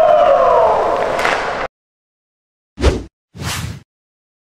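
A sound sliding down in pitch that cuts off suddenly about one and a half seconds in, then two short whoosh sound effects near the end, about half a second apart.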